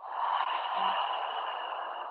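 A woman's long, breathy exhale through the open mouth, a whispery "haaa" with no voice in it, starting suddenly and fading away gradually.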